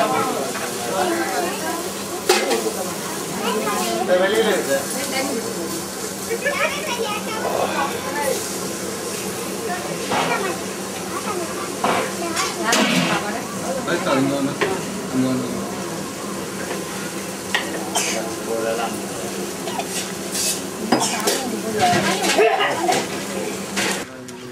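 Ambience of a busy eatery: steel plates, cups and utensils clink and clatter again and again over a steady hiss from the kitchen, with voices in the background.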